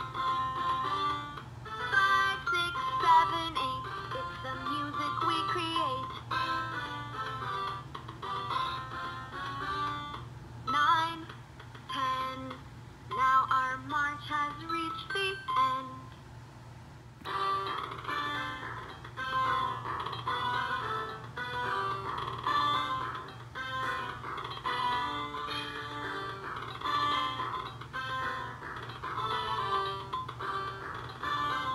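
LeapFrog Learn & Groove Color Play Drum playing an electronic children's tune through its small built-in speaker. The tune drops away briefly about halfway through, then the music starts up again.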